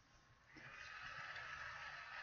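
Pencil scratching on paper, starting about half a second in and continuing steadily as lines are drawn.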